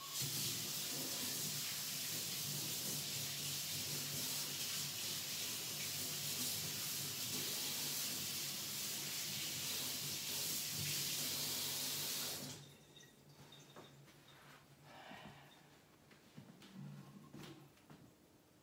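A tap running steadily into a sink for about twelve seconds, then shut off abruptly, followed by a few faint knocks and handling sounds.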